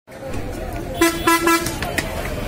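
Three short toots from a horn, starting about a second in, over a steady street and market background with voices.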